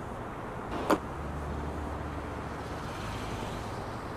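A steady low background rumble, like traffic, with one sharp click about a second in: a brass trumpet mouthpiece being seated in the horn.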